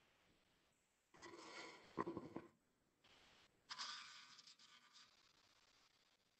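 Faint alarm squawks of a hand-held male periodical cicada, sounded by its vibrating timbal organs and played back from a video so that they come through weakly: two harsh buzzing bursts, about a second in and about four seconds in.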